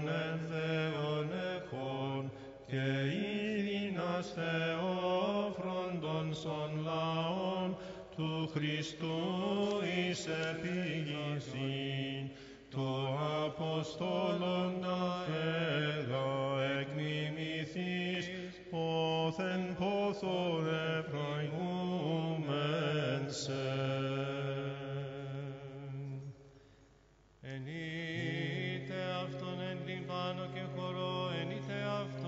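Byzantine chant sung in Greek: a melismatic hymn melody winding above a steady low held drone note (the ison). There is a brief pause for breath about 26 seconds in.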